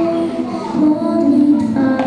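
A young girl singing a solo melody into a microphone, with held notes that glide between pitches, accompanied by an acoustic guitar.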